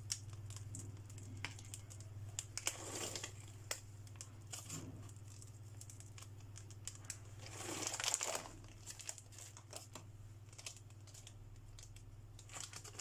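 Chocolate chips being scattered by hand over cake batter in a parchment-lined pan: light scattered ticks and soft paper rustling, with two louder rustles about three and eight seconds in, over a low steady hum.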